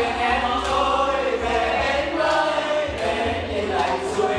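A group of men and women singing a song together, in long held notes.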